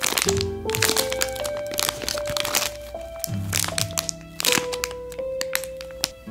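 Clear plastic packaging crinkling and crackling in bursts as a bagged bun squishy is squeezed in the hand, over background music with a simple stepping melody and bass.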